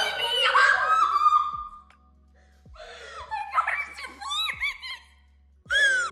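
A young woman's emotional outburst of wordless crying laughter and high-pitched squeals, in two bursts with a short pause between. It is her overjoyed reaction to being accepted.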